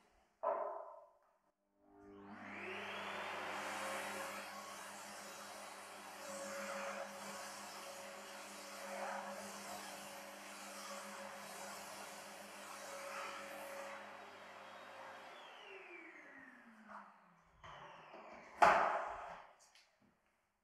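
Vacuum cleaner switched on and running steadily as its floor nozzle is passed over kraft-paper floor protection, then switched off about fifteen seconds in, its whine falling as the motor winds down. A sharp knock near the end is the loudest sound.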